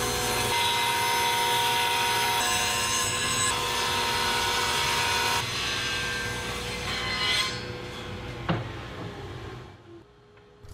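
Table saw ripping a wooden board: the saw's steady whine with the blade cutting through the wood. The cutting noise eases about five and a half seconds in while the saw runs on, with a single knock near the end as the sound fades out.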